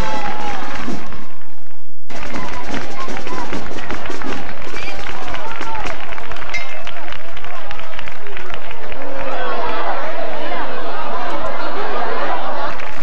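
A large crowd talking and calling out all at once, a loud, dense hubbub of many overlapping voices. A short stretch of music cuts off abruptly about a second and a half in, just before the crowd noise comes in.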